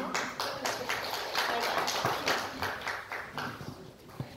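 A group of people applauding, a dense patter of hand claps that dies away near the end.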